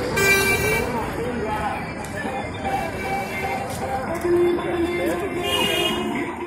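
Busy street noise with people's voices in the background and a vehicle horn tooting just after the start and again briefly near the end.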